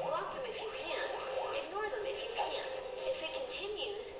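Soundtrack of an animated internet-safety video played back over room speakers: high-pitched voices with music behind them.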